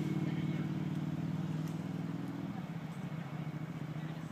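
An engine running steadily with a low hum that weakens about two and a half seconds in.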